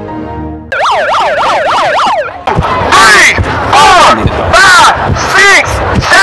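A brief snatch of music, then an electronic siren: first a fast yelping wail, then slower, louder rising-and-falling whoops about twice a second, the kind a handheld megaphone's siren setting makes.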